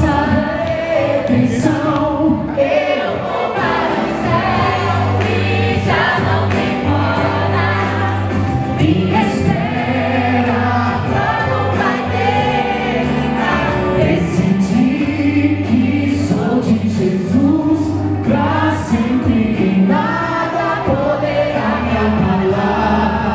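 Gospel song in Portuguese performed live: a singer on a handheld microphone over backing music with a steady bass line, with several voices singing together like a choir.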